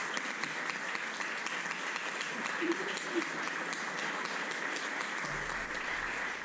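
Audience applauding steadily, with a faint voice heard briefly about three seconds in.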